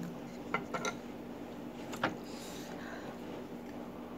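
Light clicks and taps of chopsticks and a drinking glass being handled on a wooden tray. There is a small cluster of knocks about half a second in and one sharper click about two seconds in.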